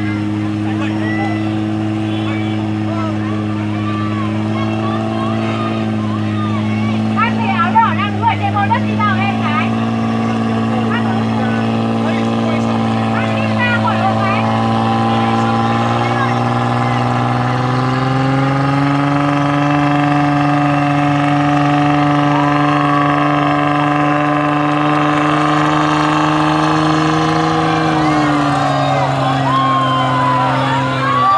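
Off-road Nissan 4x4's engine held at steady high revs as it crawls up a near-vertical dirt climb, its pitch stepping up about two-thirds of the way through and dropping again near the end. Crowd voices and shouts rise briefly about a quarter of the way in.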